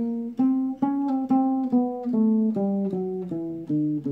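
Acoustic guitar played one note at a time with the thumb, a 1-3-4 fretting-finger exercise on the low strings. Evenly spaced plucked single notes, a little under three a second, step lower over the second half as the pattern shifts back down the neck.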